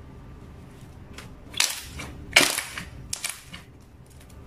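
Clear slime being stretched and pressed by hand, letting out sharp crackling pops: three loud bursts in the middle, the second the loudest.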